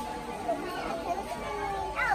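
Indistinct chatter of children's and visitors' voices.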